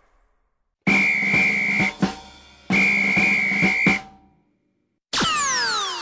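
Cartoon sound effects: two held whistle notes, each about a second long with drum hits under it, then about five seconds in a falling slide-whistle glide that fades away.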